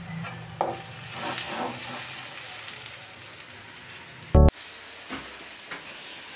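Steady hiss of rain, with faint voices in the background and one short, very loud beep about four and a half seconds in.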